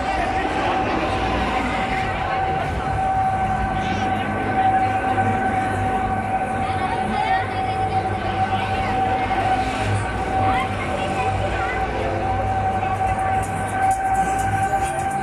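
Gladiator swing-arm fairground ride running, with a steady high whine that holds one pitch throughout, heard over a busy mix of voices.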